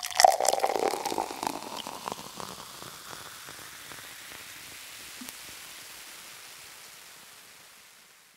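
Sparkling wine poured into a glass, foaming with dense crackling fizz for the first couple of seconds, then settling into a hiss of bubbles that slowly fades away.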